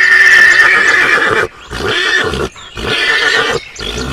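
Horse neighing: one long whinny over the first second and a half, then two shorter calls.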